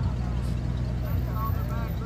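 Low, steady engine rumble from slow-moving parade cars, with indistinct voices of people talking in the background.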